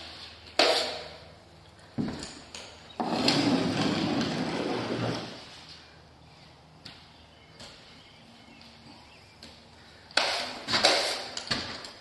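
Drywall knife scraping wet drywall mud off a sheet of drywall, with one longer scrape a few seconds in and a few knocks and scrapes near the end. The thin mud is being taken off after soaking into the board to soften it for bending.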